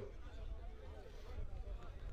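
Faint pitch-side sound at a football match: distant, indistinct voices from the pitch over a low rumble.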